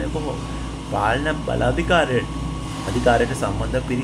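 A man speaking in short phrases, over a steady low hum.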